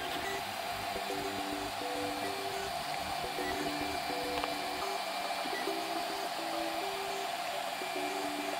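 Prusa i3 A602 3D printer printing: its stepper motors whine in short tones that jump in pitch with each move of the print head, over the steady whir of its cooling fans.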